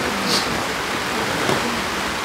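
A steady, even hiss of background noise with no clear event in it.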